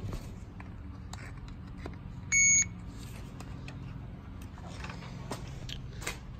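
A power probe circuit tester gives one short electronic beep about two and a half seconds in. A steady low hum and a few faint clicks run beneath it.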